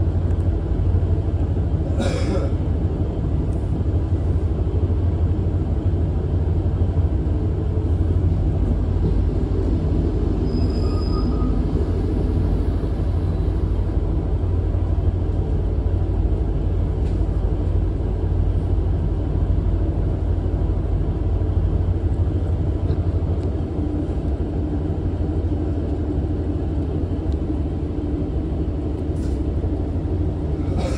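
Steady low rumble of a passenger train running along the line, heard from inside the carriage: wheels on rails and the train's running noise.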